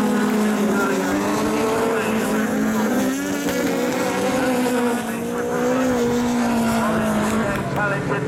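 Engines of several autograss buggies running hard as they race round a dirt track. Their pitch rises and falls through the laps, with two or more engines heard at once.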